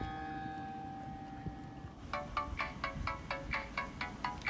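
Background music: a held chord rings and fades, then about two seconds in a quick run of short plucked notes starts, about five a second.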